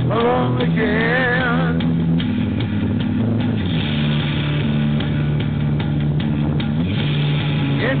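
Rock band playing an instrumental passage: electric guitar over bass and drums with a steady beat, with wavering held notes in the first two seconds.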